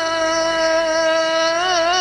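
A male voice reciting the Quran in the melodic mujawwad style, holding one long steady note that begins to waver near the end.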